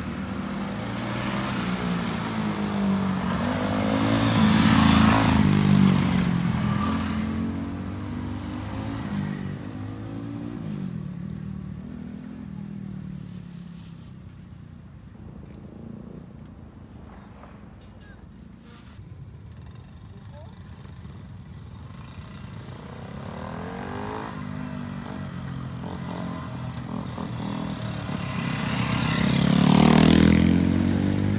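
Small minibike engines riding past one after another, their pitch bending as each goes by. Loudest about five seconds in, quieter through the middle, then another bike comes up loudest at the end.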